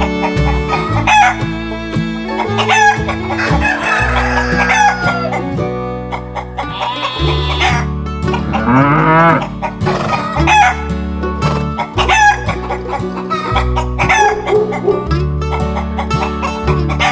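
Chicken sounds: hens clucking and a rooster crowing about halfway through, over banjo-led country background music.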